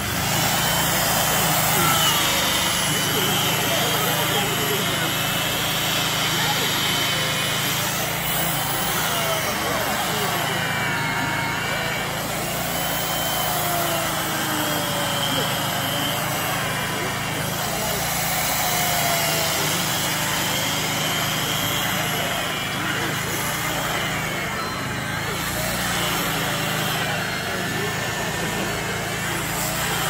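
Battery-powered carving tool running steadily as it cuts into a block of ice. It starts right at the beginning and its pitch wavers as the blade bites and eases.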